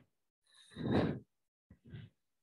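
A person's short, breathy sigh, about a second in.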